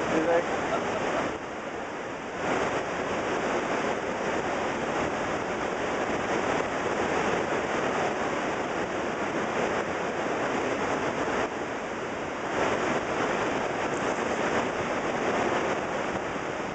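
Niagara Falls: the steady rush of a vast volume of water plunging over the crest. It dips briefly in level twice, about a second in and again near twelve seconds.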